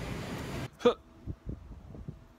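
Steady indoor store background noise that cuts off abruptly under a second in, then a single short vocal sound from a man, followed by much quieter outdoor air with a couple of faint knocks.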